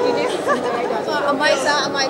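Speech only: people talking, with several voices overlapping in background chatter.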